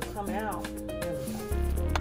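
Background music with a brief sung line; a heavy bass line comes in about one and a half seconds in, over a steady beat.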